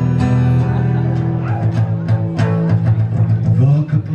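Amplified acoustic guitar played live, strummed chords ringing on in an instrumental passage of a song.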